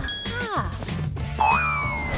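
Background music with cartoon sound effects: a short falling swoop about half a second in, then a long whistle that slowly falls in pitch starting about a second and a half in.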